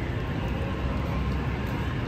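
City street ambience: a steady low rumble of traffic.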